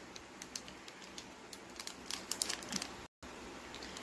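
Foil booster-pack wrapper crinkling and being torn open by hand: faint, scattered crackles and small clicks. The sound drops out to silence for a moment about three seconds in.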